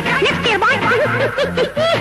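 Wedding music: a wind instrument plays quick phrases of notes that bend up and down, over a repeating drum beat.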